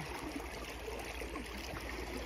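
Shallow creek water running over rocks, a steady flowing sound.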